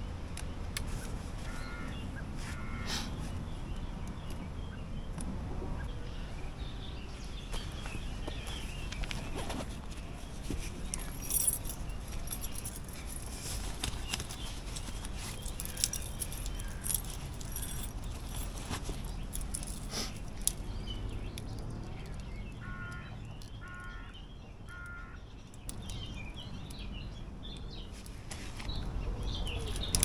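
Outdoor woodland ambience with birds calling, under small clicks and rattles from a trail camera and its gear being opened and handled. Near the end come three short high notes about a second apart.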